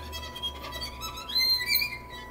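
Solo violin played softly, sliding up to a high note about halfway through.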